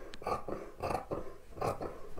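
Dressmaking scissors cutting through knit fabric, a run of short snips about three a second as the blades work along the edge of the paper pattern.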